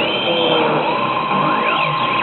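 Yamasa Zegapain pachislot machine sounding its electronic game effects during AT play: a short falling tone, then a held electronic tone from about halfway in, with quick up-and-down pitch sweeps near the end, over a steady background din.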